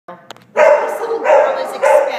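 A dog barking three times, loud, about two-thirds of a second apart.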